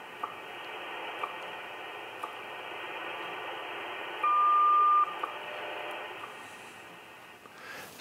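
Shortwave receiver playing the WWV time-signal broadcast on 15 MHz: steady band hiss with faint ticks once a second, then a single clear beep just under a second long about four seconds in, the tone that marks the top of the minute.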